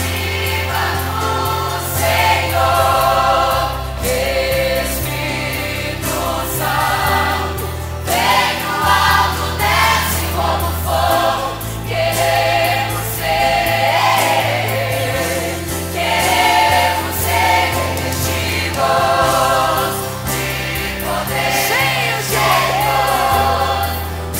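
A teen church choir singing a hymn, with many voices blended and wavering on held notes. An instrumental accompaniment including cellos plays long low bass notes underneath that change every few seconds.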